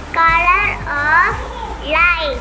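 A young girl's voice speaking in two short, high-pitched phrases and starting a third near the end, over quiet background music.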